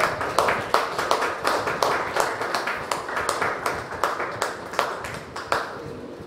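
A small group of people clapping, individual claps coming thick and fast, then dying away near the end.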